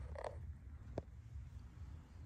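Faint handling noise from a handheld camera being moved through the car's cabin: a low rumble, a short creak just after the start, and a single click about a second in.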